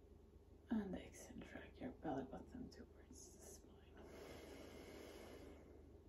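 A woman's quiet, half-whispered voice for a few seconds, then one long audible exhale of about a second and a half: the slow out-breath of a yoga belly-breathing exercise.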